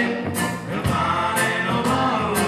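Children's choir singing in unison, accompanied by a strummed acoustic guitar with strokes about every half second.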